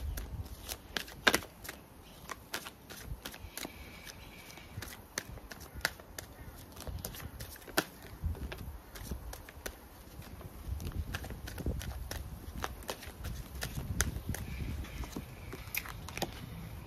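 A deck of tarot cards being shuffled and handled by hand: irregular light clicks and flicks of the cards.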